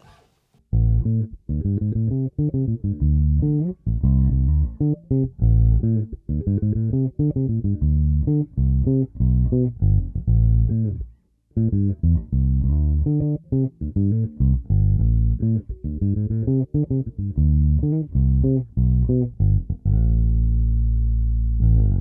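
Harley Benton MV-4MSB short-scale electric bass playing a line of plucked notes with both pickups in parallel and the tone knob rolled fully off, so the highs are cut. There is a short pause about halfway through, and it ends on a long held low note.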